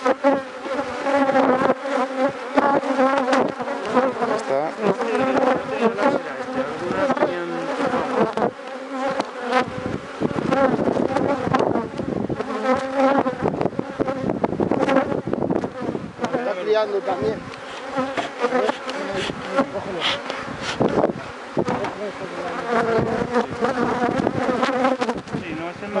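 A mass of honeybees buzzing loudly and continuously around an opened hive, many wingbeat tones wavering together, with a few sharp knocks.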